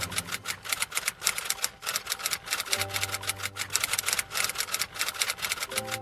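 Typewriter-style key-click sound effect, rapid clicks several a second, over background music.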